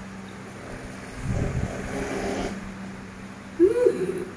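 A young child's wordless vocal sounds: a low murmur about a second in, then a short, loud rising-and-falling "ah" near the end.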